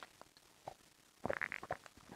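A few faint clicks and soft short noises, with a small cluster of them a little over a second in.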